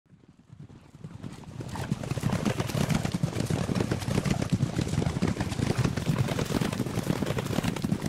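Horses galloping: a dense, rapid drumming of hoofbeats that fades in over the first two seconds and then holds steady.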